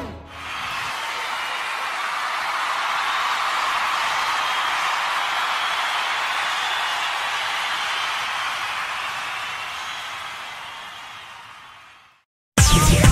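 Audience applauding after a song ends, holding steady and then fading out near the end.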